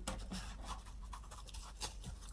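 Faint rustling and light scratching as a kitchen sponge with a scouring pad is picked up and handled against a desktop, with small ticks and a slightly sharper tick near the end.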